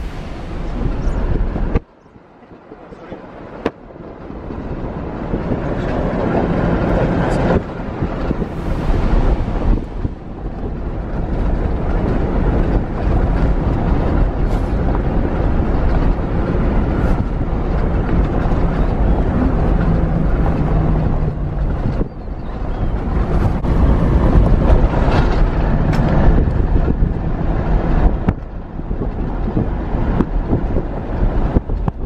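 Wind rushing over the microphone on top of the engine and road noise of a moving vehicle, loud and steady, with a short dip about two seconds in.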